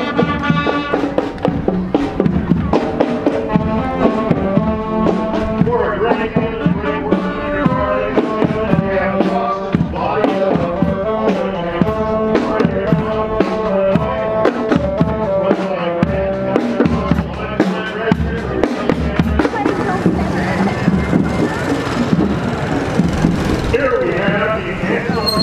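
Marching band playing as it passes: wind instruments holding and changing notes over a steady run of drum beats.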